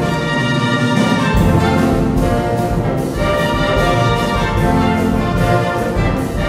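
Concert wind band playing a Latin-style medley, brass to the fore with trumpets and trombones. The low bass thins out about half a second in and comes back in strongly about a second later.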